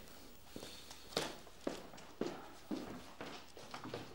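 Footsteps on a hard floor, a person walking at an even pace of about two steps a second, starting about a second in.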